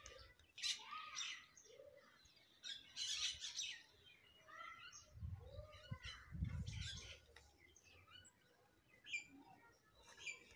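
Birds chirping and calling in short, scattered notes, faint, with a few low thumps about halfway through.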